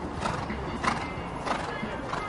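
A horse cantering on grass, its strides sounding as a steady beat about every 0.6 seconds.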